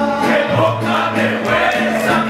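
Live mariachi music: singing voices over violins, guitars and a guitarrón bass line, playing a ranchera song.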